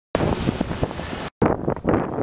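Wind buffeting the microphone, a steady rough noise that drops out briefly just past halfway and then resumes.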